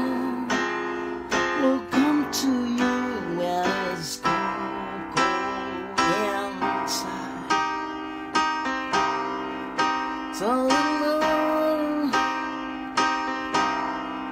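Electronic keyboard played in a steady run of piano-like chords. A man's voice joins with a soft wordless gliding line about two seconds in, and again near the ten-second mark.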